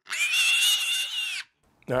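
A guinea pig's long, high-pitched squeal, held steady for about a second and a half, then cut off.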